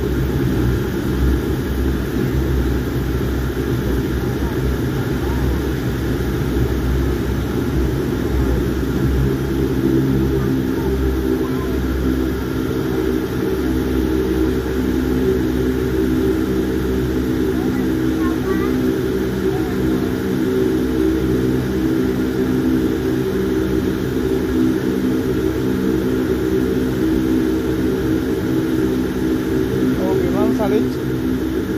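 Aircraft cabin noise while the plane rolls along the runway: a loud, steady low rumble of engines and wheels heard from inside, with a steady engine hum coming in about ten seconds in.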